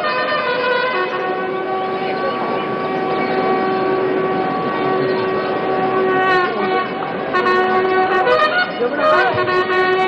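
Soldiers' long drawn-out shouted parade commands, each held on one steady pitch for several seconds. One call runs for about the first six seconds, and another begins about a second later and carries on to the end. Both ride over a steady crowd din.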